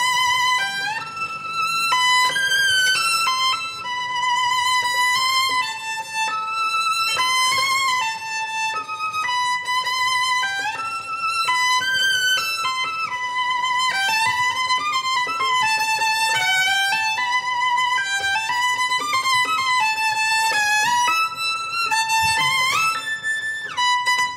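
Solo violin playing a slow melodic phrase, each held note sung with a wide vibrato.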